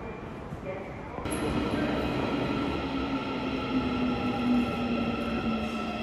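Daegu Metro Line 2 train pulling into an underground station. A rumble of wheels and a motor whine come in about a second in, and the whine falls steadily in pitch as the train slows.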